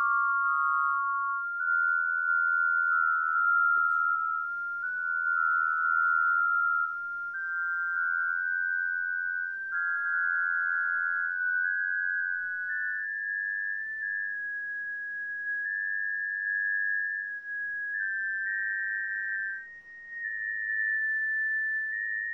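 A computer-generated data sonification: a sequence of pure sine tones, one or two sounding at once, stepping from note to note between about 1 and 2 kHz with the pitch drifting slowly upward. A faint hiss comes in with a small click about four seconds in.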